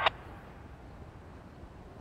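Faint, steady outdoor background noise: a low rumble under a soft hiss, with no distinct event.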